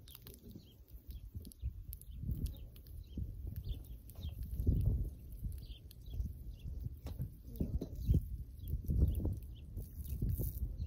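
Wind buffeting the microphone in uneven low gusts, loudest in a few surges, with small birds chirping faintly throughout.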